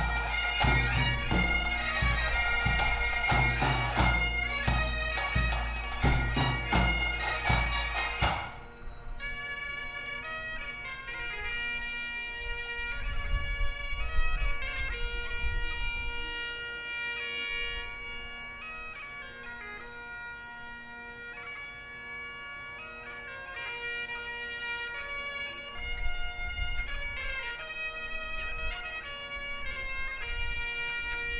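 Breton bagad playing live: bagpipes and bombardes over a steady beat of drums. About eight and a half seconds in, the drums stop abruptly and the band drops to a quieter melodic passage of the wind instruments alone.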